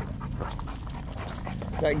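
Cane Corso panting.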